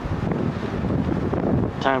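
Wind buffeting the camera's microphone, a steady low rumbling rush.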